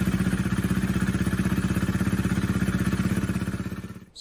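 Honda CRF300L single-cylinder engine idling steadily with an even pulsing beat, fading out near the end. It is running just after a fresh oil change to circulate the oil and build oil pressure.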